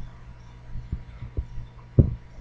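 A steady low hum with three soft, dull thumps, the loudest right at the end.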